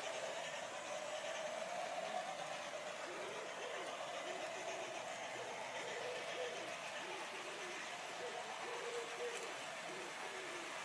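Quiet garden ambience with pigeons cooing faintly and repeatedly in the background, over a faint steady hum.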